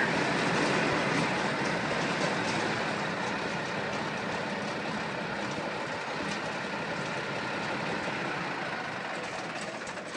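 Large diesel tractor engine, the 19-litre Cummins of a Versatile eight-wheel-drive tractor, running steadily at idle and growing gradually fainter.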